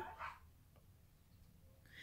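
Near silence: quiet room tone between spoken sentences, with the last of a word at the start and a faint breath-like sound near the end.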